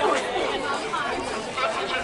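People chattering nearby, voices overlapping with no clear words.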